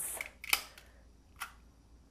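Plastic handheld egg cracker squeezed shut on an egg: a sharp click about half a second in and a lighter click about a second later as the mechanism snaps and the eggshell cracks.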